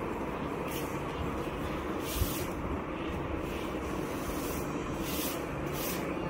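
Steady low rumble of background noise, with a few short hissing swishes about two seconds in and twice near the end.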